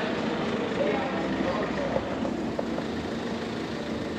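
Steady outdoor street noise with a low hum, and faint snatches of people's voices.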